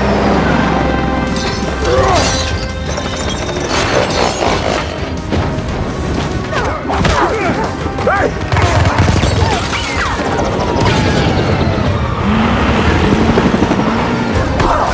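Action-film soundtrack: a loud, dense music score mixed with repeated booms and crashes, and vehicle and helicopter noise underneath.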